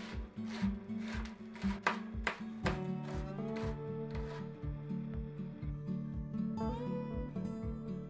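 A chef's knife chopping young cabbage on a plastic cutting board, about a dozen quick cuts in the first two and a half seconds, over background music. After that only the music is heard, with a steady beat.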